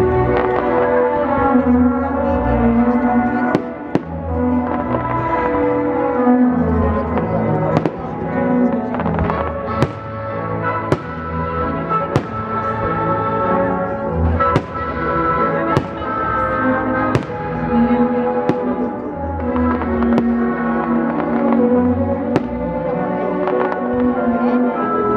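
Fireworks shells going off with sharp bangs every second or two over loud, continuous music, the soundtrack of a pyromusical display.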